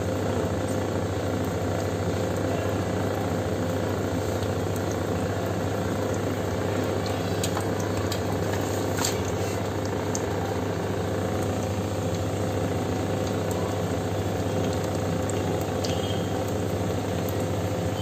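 Dal fritters (dahi bhalle) sizzling steadily in a kadai of hot oil during their second fry, with occasional faint crackles. A steady low hum runs underneath.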